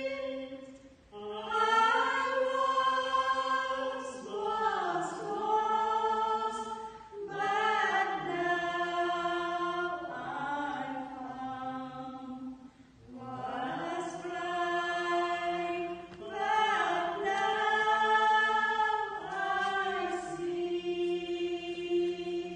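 A small group of women's voices singing a Christmas carol together, in phrases of long held notes broken by short pauses for breath.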